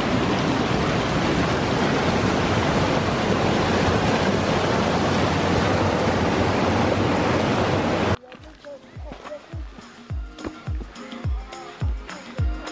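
A mountain stream rushing, loud and steady. It cuts off suddenly about eight seconds in, giving way to background music with a steady bass beat of about two beats a second.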